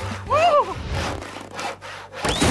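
Rasping, sawing-like noise over a low hum for a cartoon sound effect, with a short rising-and-falling cartoon grumble about half a second in.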